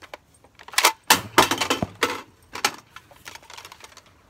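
Plastic clicks and clatter of an Adventure Force toy dart blaster's magazine being swapped in a tactical reload: the empty magazine pulled out and a fresh one pushed in. The loudest rattle comes about a second in, with a few lighter clicks after.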